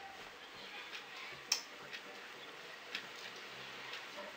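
Hands rubbing and breaking up freshly steamed couscous in a glazed earthenware dish: a faint rustle of grains with a few light clicks, the sharpest about a second and a half in.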